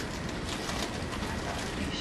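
Steady background hiss and room tone of a lecture-room recording, with no speech.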